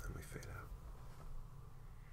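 A man's voice making a brief whispered, breathy sound at the start, over a low steady hum.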